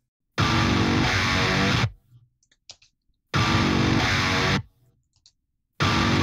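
A distorted electric rhythm guitar in a metal mix, played through the MLC Subzero amp sim plugin. It comes in three stop-start blocks, each about a second and a half long with dead silence between, and the third starts near the end. The guitar enters each time after a silence, here without the small volume bump.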